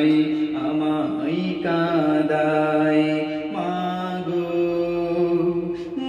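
A young man singing a Bengali Islamic gojol (devotional song) solo into a handheld microphone, holding long, slowly gliding notes in a few phrases.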